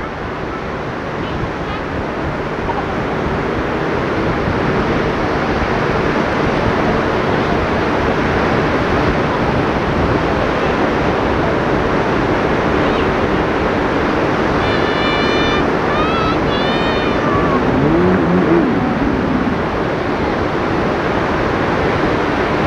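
Steady sea surf mixed with wind on the microphone, swelling over the first few seconds. Brief faint high calls and a distant voice come through about fifteen to nineteen seconds in.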